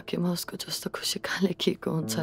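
Speech only: a voice talking quietly in a short stretch of dialogue.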